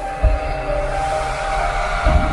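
Cinematic logo-intro music: held synth tones that step in pitch, over a deep bass boom about a quarter second in, with a hissing whoosh swelling toward the end.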